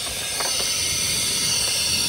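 Steady hiss of compressed air at about 500 psi escaping from a 6.0 Powerstroke's high-pressure oil system. The mechanic suspects it is leaking past the seal on the back of the high-pressure oil pump, where the gear is.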